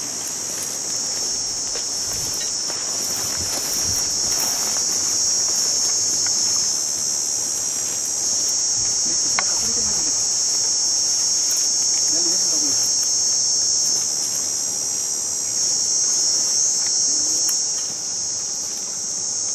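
A steady, high-pitched chorus of insects, crickets or cicadas, drones on without a break, with slight swells in loudness.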